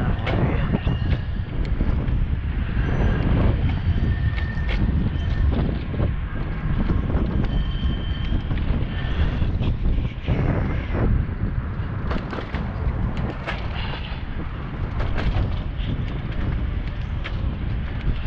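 Wind buffeting the action camera's microphone: a loud, uneven low rumble throughout, with scattered brief clicks and knocks over it.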